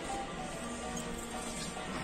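Background music with faint, steady held tones.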